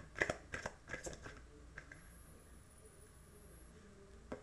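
Tarot cards being handled and shuffled: a quick run of soft clicks and riffles in the first second and a half, then only faint card handling.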